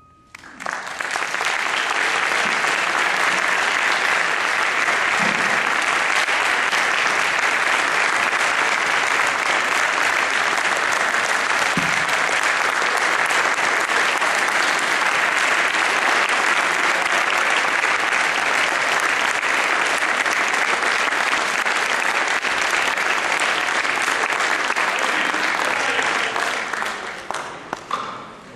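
Audience applauding after a concert band's performance, starting about half a second in, holding steady and loud, then dying away a couple of seconds before the end.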